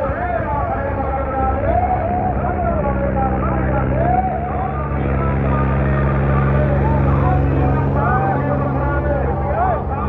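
Tractor diesel engine running hard under heavy load as it drags a harrow, its steady drone growing louder through the middle. A man's voice talks over it.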